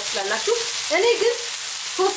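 Lamb, onion and mushroom frying in a non-stick pan: a steady sizzle.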